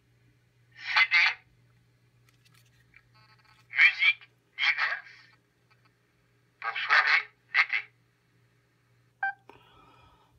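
PenFriend 2 talking label reader playing back a recorded voice label through its small built-in speaker. The voice is thin and tinny, in a few short phrases, with a brief beep near the end.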